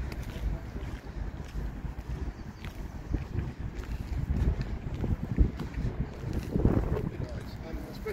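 Wind buffeting the microphone, heard as an uneven low rumble, with faint indistinct voices in the second half.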